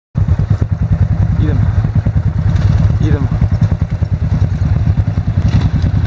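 Enduro dirt-bike engines idling close by: a loud, steady, fast low pulsing, with voices faintly over it.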